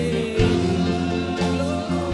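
Live gospel worship music: a man singing a hymn through a microphone over keyboard accompaniment with a steady beat.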